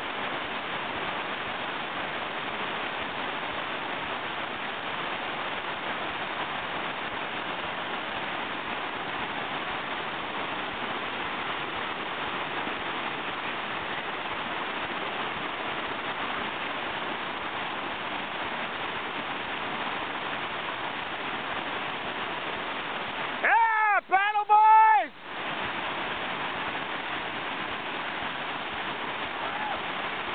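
River rapids rushing steadily, an even hiss of white water. About three-quarters of the way through, a person lets out a loud, wavering yell lasting a couple of seconds.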